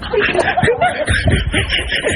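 Laughter: a run of snickering, chuckling laughs in short quick pulses, several a second, starting just as the talk stops.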